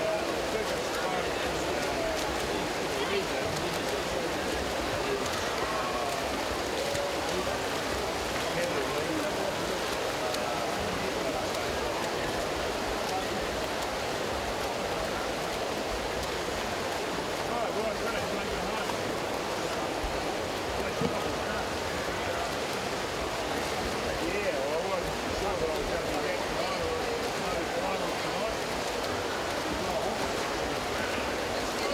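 Indoor pool-hall ambience: steady splashing and churning water from freestyle swimmers racing, under a low murmur of spectators' voices.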